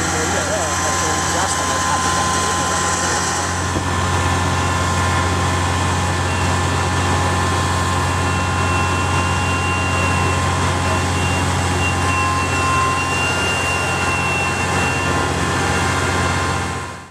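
A fire truck's engine runs its pump at a steady drone, feeding the hoses, with a thin steady whine over it. Voices are mixed in during the first few seconds.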